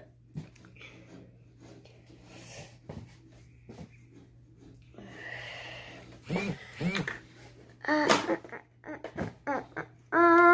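Small clicks and rustles of plastic makeup compacts being handled and set down, with a breathy exhale about five seconds in and a few brief murmured vocal sounds in the second half.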